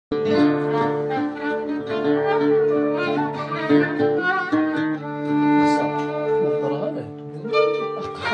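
Instrumental music led by a bowed string instrument like a violin, playing a sliding melody over held low notes.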